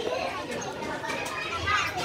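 Indistinct chatter of teenage students talking over one another, with one voice coming up more clearly near the end.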